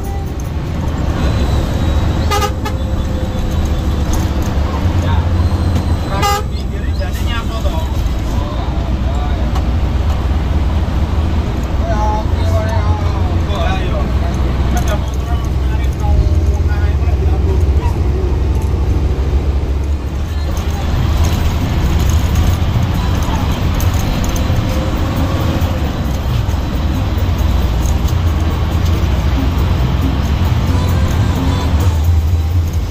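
Hino AK 8 bus's diesel engine running steadily at road speed, a low drone heard from inside the cabin, with the horn tooted over it.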